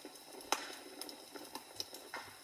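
Log fire crackling, with irregular sharp pops over a faint steady background, the loudest pop about half a second in.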